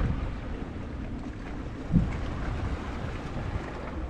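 Wind rumbling on the microphone over water washing against a boat hull, with a single low thump about two seconds in.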